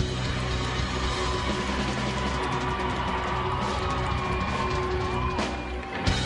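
Live indie garage rock band playing an instrumental passage with no vocals: long held notes over bass and drums.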